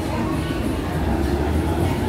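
Low rumble of a subway train running beneath the street, growing stronger about a second in, under the chatter of a sidewalk crowd.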